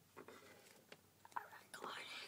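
Faint whispering, with a few light clicks.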